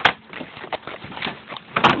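Knocking and scraping from gear being handled in a kayak, with a sharp knock at the start and a louder clatter near the end.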